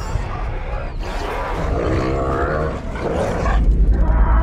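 Film sound-effect roar of an Allosaurus, one wavering pitched call in the middle, over a steady deep rumble.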